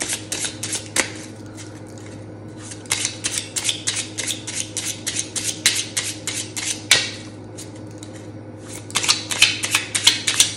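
A deck of tarot cards being shuffled by hand: bursts of rapid card clicks and flutters in the first second, again from about three to six and a half seconds, and near the end, with quieter gaps between and a single sharper snap near seven seconds.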